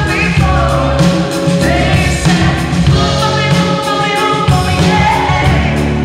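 Live band performance: a woman singing lead through the PA over a rock drum kit, with evenly spaced drum hits and a heavy low end.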